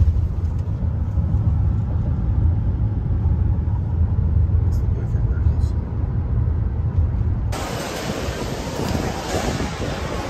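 Steady low road rumble inside a moving car's cabin. About seven and a half seconds in, it cuts suddenly to busier outdoor noise with a crowd of people.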